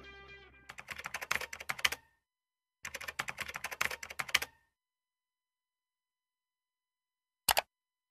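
Music fades out in the first second, then two runs of rapid clicking, each about a second and a half long, like keys being typed. After a silence comes one short sharp click near the end.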